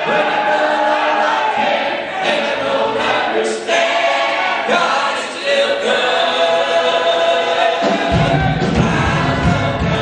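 Church adult choir singing a gospel song together in full voice. About eight seconds in, a deep low accompaniment comes in beneath the voices.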